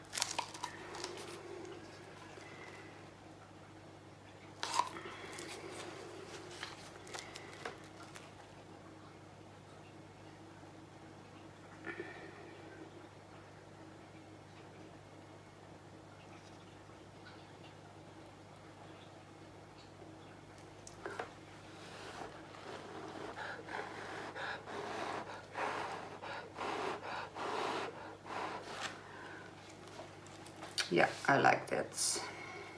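Faint handling noises of resin work with a paper cup and a wooden stick: a few sharp clicks and taps, then a stretch of irregular small rustles and knocks near the end, over a steady low hum.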